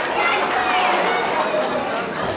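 Crowd of spectators talking over one another: a steady hubbub of many voices with no single speaker standing out.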